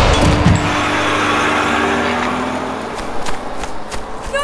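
A punk rock song ending: its last chord rings out with a noisy wash and fades away over about three seconds.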